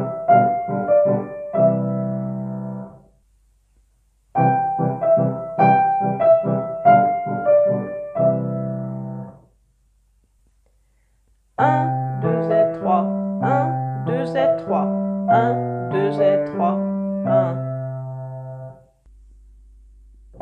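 Kawai piano playing a slow legato three-against-two polyrhythm exercise, triplets in one hand against duplets in the other. It is played as two short phrases, each ending on a held low chord with a pause after it, then a longer, more flowing passage that stops shortly before the end.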